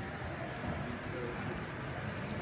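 An N scale model train running past on the layout track: a steady rolling rumble over even room noise.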